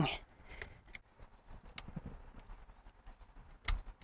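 Faint, scattered metallic clicks and ticks of a screwdriver working a small spring and pin into a Lock Right lunchbox locker inside an open rear differential, with one sharper click near the end.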